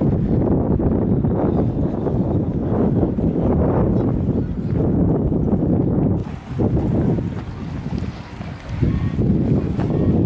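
Wind buffeting the microphone: a loud, low, unpitched rumble that dips briefly a few times in the second half.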